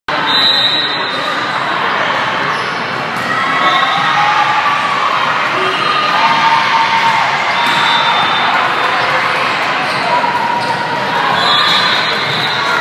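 Busy volleyball gym, echoing in a large hall: shoes squeaking on the sport court, players calling and chattering, and balls being struck.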